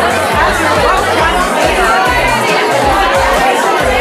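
Music with a steady bass line over the chatter of many people talking at once.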